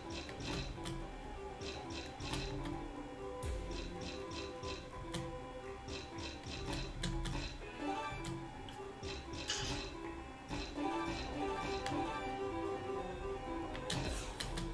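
Online slot game audio: steady background music with repeated clusters of quick clicks as the spinning reels stop one after another.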